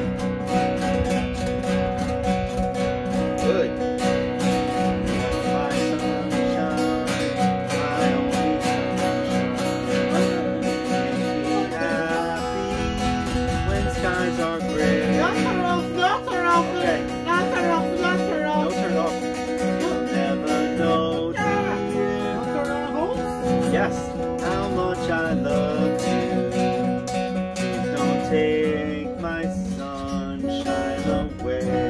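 Acoustic guitar strummed steadily in a regular rhythm, with a voice singing along for a stretch in the middle.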